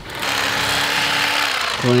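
Corded electric knife running while its serrated blade cuts a fillet off a catfish along the spine: a steady buzz over a low hum that stops near the end.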